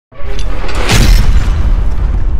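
Loud cinematic boom sound effect of an animated logo intro, with music. It starts abruptly, hits sharply about a second in, and a deep rumble carries on underneath.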